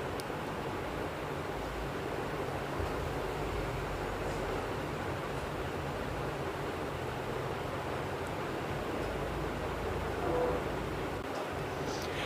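Steady background noise, an even hiss without distinct events; the opening of the cardboard box leaves no clear tearing or crinkling in it.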